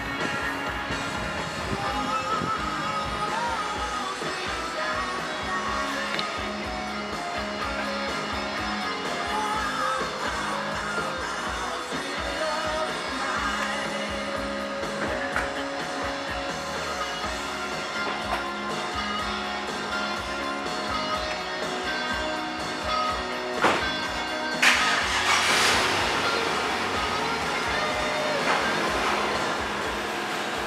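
Music from an FM radio station playing through a BMW 650i's car audio system, fed by its newly installed and programmed Top HiFi amplifier. Sound output is working again. The music gets louder and brighter for a few seconds near the end.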